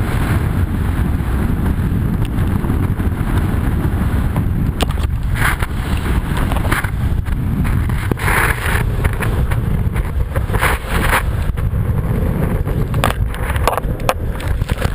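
Wind buffeting the microphone of an action camera on a kiteboard racing across choppy water, a steady rumble, with hissing splashes of spray hitting the camera every second or two from about five seconds in.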